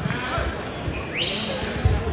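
Wrestlers' bodies thumping onto a foam wrestling mat during a takedown: a short thump at the start and a louder one near the end as they go down. Just past the middle a rising squeak, typical of a wrestling shoe on the mat.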